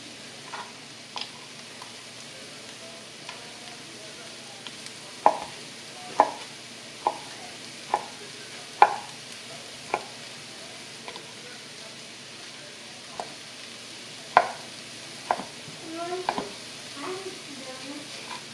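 Kitchen knife chopping a kielbasa into chunks on a cutting board: sharp knocks, about one a second through the middle of the stretch and scattered elsewhere. Under them runs a steady sizzle of onion and cabbage softening in butter in a cast-iron skillet.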